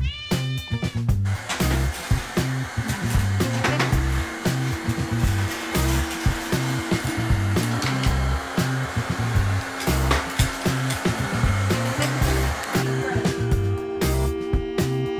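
A cat meows once at the start, then a robot vacuum runs with a steady whir over background music with a steady beat; the whir drops away near the end.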